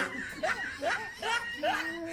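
Laughter: a run of short, quick chuckles, each rising in pitch, one after another.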